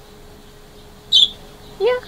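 A small pet parrot gives one short, high chirp about a second in.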